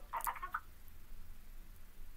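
A brief, faint vocal sound in the first half-second, then quiet room tone with a low steady hum.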